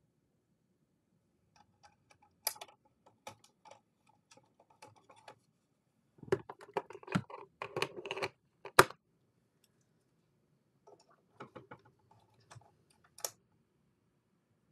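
Hands handling a camera while its dead battery is swapped: scattered clicks and short rustles, busiest in the middle, with one sharp snap about nine seconds in.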